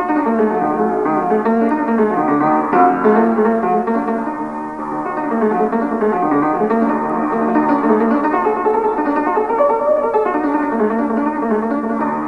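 Piano playing an Ethiopian melody in a continuous flow of notes. The recording sounds dull, with little treble.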